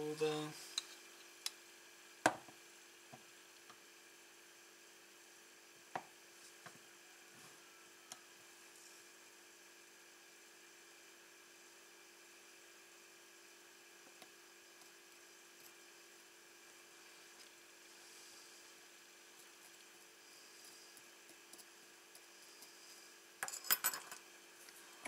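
Quiet workbench handling: a few light clicks and taps of small items such as a metal tin and tools being picked up and set down, over a steady faint electrical hum.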